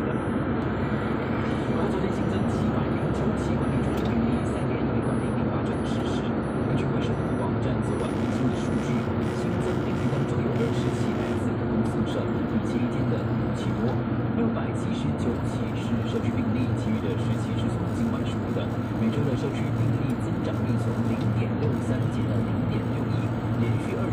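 Steady road and engine noise of a moving car heard from inside the cabin, with the car radio playing voices and music over it.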